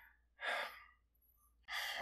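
A man's audible breath about half a second in, followed by another breath near the end, just before he speaks.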